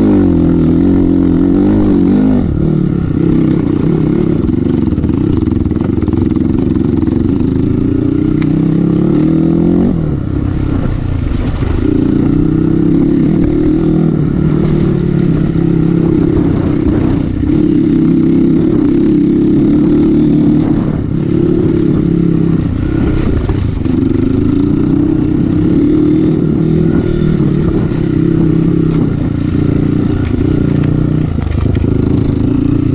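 Kawasaki KLX dirt bike's single-cylinder four-stroke engine running under constantly changing throttle, its pitch rising and falling as the rider works along a rough trail, with a clear easing off about a third of the way through.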